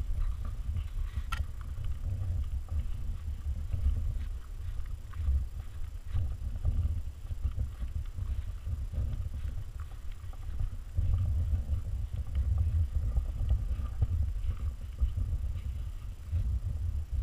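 Wind buffeting a small camera's microphone: an uneven low rumble that swells and drops, with a few faint ticks over it.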